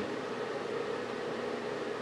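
Steady background hiss of room noise, with no distinct events.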